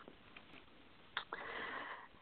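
Near silence, then a faint mouth click and a short breath drawn in through the nose by the narrator before speaking again.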